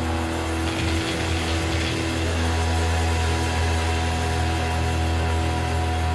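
A steady low droning hum with a few held tones above it, unchanging and with no beat.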